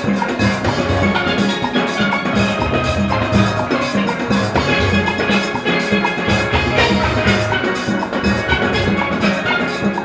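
A full steel band playing: many steel pans struck with sticks in fast runs of notes, over a steady beat from the rhythm section.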